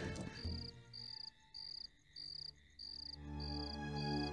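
Cricket chirping in an even rhythm, about one and a half chirps a second, as a night ambience. Soft background music swells back in near the end.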